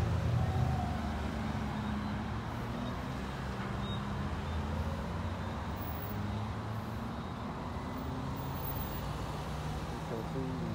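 Road traffic: several cars passing, their engines and tyres making a steady rumble. One vehicle's engine hum is loudest in the first second or so.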